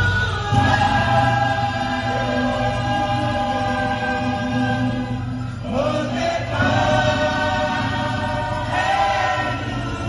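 A large group of voices singing a Cook Islands Māori kapa rima (action song) in long held chords over a steady low accompaniment, taking breath between phrases about six and nine seconds in.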